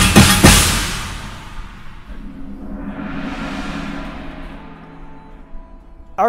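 Drum corps battery and front ensemble playing a fast passage that ends in a loud final accent about half a second in and then rings out. A cymbal swell rises and dies away over a held low note from the pit, fading almost to nothing near the end.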